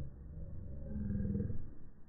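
Pitched-down slow-motion audio: a deep, drawn-out sound over low rumble, with a pitched tone swelling about halfway through.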